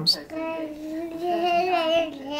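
A toddler's voice holding one long sung note at a fairly steady high pitch for nearly two seconds. The note wavers slightly and lifts a little near the end.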